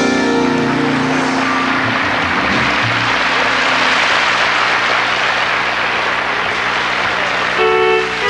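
Studio audience applauding over the band's fading held closing chord. Near the end the band starts up the next tune.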